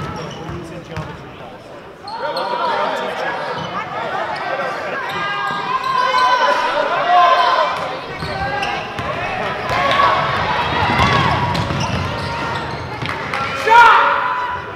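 A basketball dribbled on a hardwood gym floor, among the unintelligible calls of players and spectators that echo in the gym. The voices grow louder about two seconds in, with a loud shout near the end.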